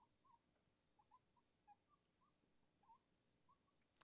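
Near silence, with faint short squeaks of a marker writing on a whiteboard, about a dozen scattered through.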